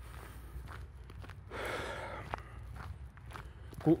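Footsteps of a person walking, with a soft rush of noise for about half a second in the middle.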